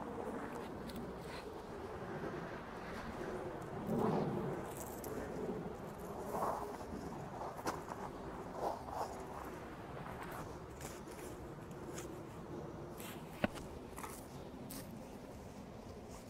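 A long-handled digging tool being pushed into and levered through garden soil to loosen a dahlia tuber clump: faint, scattered crunches and scrapes of soil, with a louder shove about four seconds in and a sharp click near the end.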